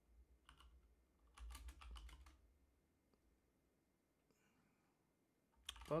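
Typing on a computer keyboard: a couple of keystrokes about half a second in, then a quick run of keystrokes up to about two seconds in, as a short terminal command is typed and entered.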